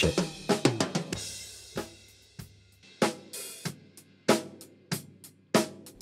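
Recorded live drum kit from the room microphone playing back: kick, snare and cymbal strikes about twice a second, with cymbal wash and room ambience ringing between the hits.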